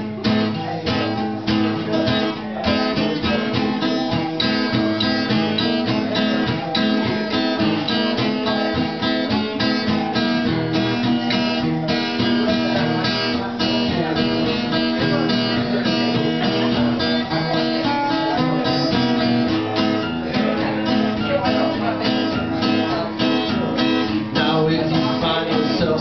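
Two guitars, one of them a steel-string acoustic, strummed together in a steady rhythm, with no singing.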